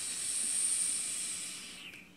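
A long, breathy hiss from a puff on an electronic vaporizer, as air and vapor are drawn or blown through it, fading out near the end.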